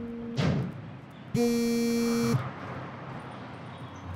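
Mobile phone ringing with a buzzy, steady ring tone. One ring ends just after the start, and another sounds for about a second from about a second and a half in.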